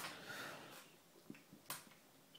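A cat eating a scrap of chicken ham off a wooden floor: a few faint, short clicks of chewing, one at the start and two more near the end.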